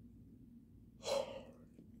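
A woman yawning behind her hand. The yawn ends in one short breathy gasp about a second in.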